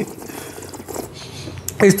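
Red wine being swished and aerated in a taster's mouth, air drawn through the liquid: a soft, even hiss for about a second and a half.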